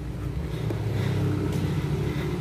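A car driving past on the road, a low steady rumble of engine and tyres that swells slightly about a second in.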